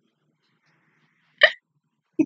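A woman laughing behind her hand: one short, sharp burst of breath about one and a half seconds in.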